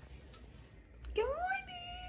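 A woman's high-pitched, drawn-out excited vocal cry starting about a second in, rising in pitch and then held.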